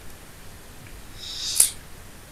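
Quiet pause with faint room tone; about one and a half seconds in, a short rising hiss ends in a sharp click.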